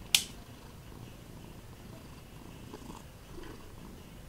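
A single sharp click of a rocker mains switch on the installation's power box being flipped, just after the start, over a faint low background rumble.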